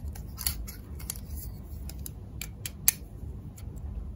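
Hard plastic toy window-frame pieces clicking and clacking against each other as they are handled and fitted together: a string of sharp, irregular clicks, the loudest about three seconds in.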